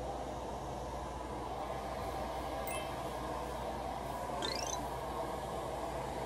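Steady low hum of a hair salon's room tone, with a faint short high tone a little before the middle and a faint rising tone about four and a half seconds in.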